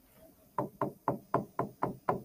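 Fingertip tapping on an interactive touchscreen board while typing on its on-screen keyboard: six short, sharp taps at about four a second, starting about half a second in.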